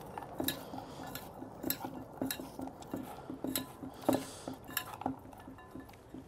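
A hand mixing pomegranate seeds, dates, herbs and walnuts in a stainless steel bowl, with repeated light clicks and taps against the steel, roughly twice a second.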